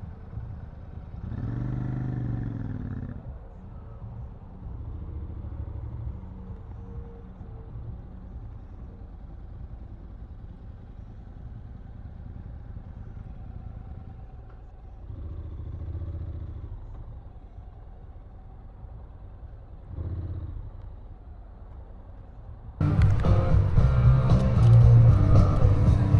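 Motorcycle engines running at idle and at walking pace while parking, a low steady rumble with a few brief swells. Loud music cuts in suddenly about 23 seconds in.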